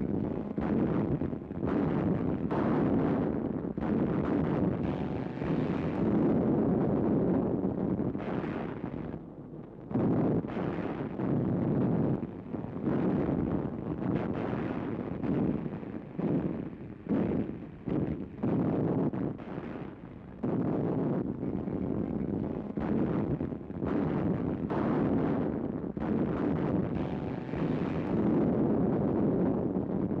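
Loud, continuous rumble of heavy naval gunfire and explosions mixed with wind, swelling and dipping in waves, with brief drops about ten and twenty seconds in.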